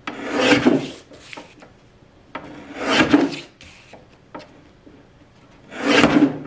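Guillotine paper trimmer's blade arm slicing through sheets of label paper: three scraping cuts of about a second each, roughly three seconds apart, with paper sliding and light taps between them.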